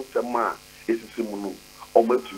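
Only speech: a man talking over a telephone line, the sound thin with nothing above the upper midrange.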